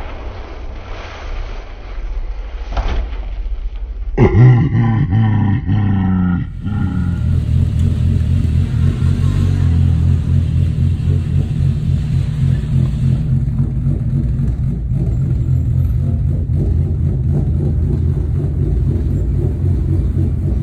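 Ford Mustang engine revving as the car slides in snow, with a sudden loud rev about four seconds in. After that the engine runs steadily at a low, even note for the rest.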